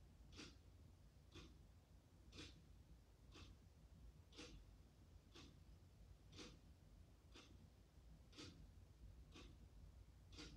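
Faint ticking of a clock, one tick each second, alternating a louder and a softer tick, over a low steady room hum.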